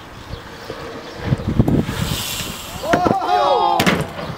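Several people shouting in alarm as a BMX rider crashes and the bike flies loose, with a sharp impact just before the end. Wind and tyre noise on concrete beneath.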